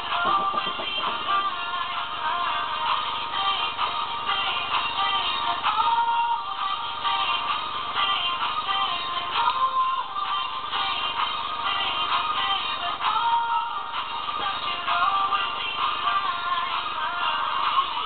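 A pop song with sung vocals, a man's voice singing along, continuous and steady in level.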